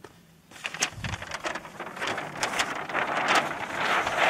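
Large paper presentation sheets rustling and crackling as a page is lifted and flipped over, starting about half a second in and getting louder.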